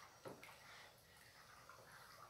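Near silence, with faint sounds of a plastic spoon stirring a thick, liquid homemade soap mixture in a plastic tub.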